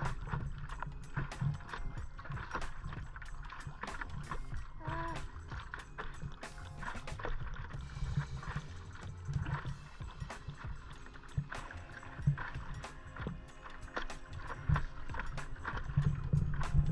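Water lapping and splashing around a stand-up paddleboard, with many small irregular splashes, under background music.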